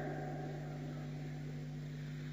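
A pause in the speech, filled only by a steady low hum and faint hiss in the recording.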